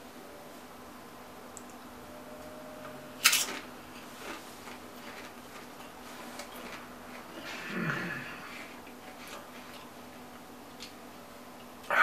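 A bite into a Walkers potato crisp, with one sharp crunch about three seconds in and soft chewing clicks after it. Near eight seconds there is a short hummed "mmm"; a faint steady hum lies underneath.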